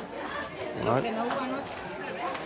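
Several people talking at once, with voices and chatter filling the room.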